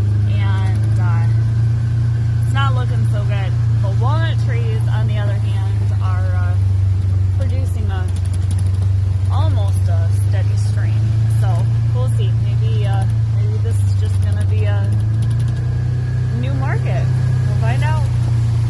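Vehicle engine idling, a steady low hum heard from inside the cab, its pitch stepping up slightly about fifteen seconds in.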